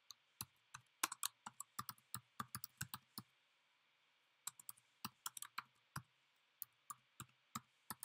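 Typing on a computer keyboard: a quick run of keystrokes, a pause of about a second, then more keystrokes at a slower, uneven pace.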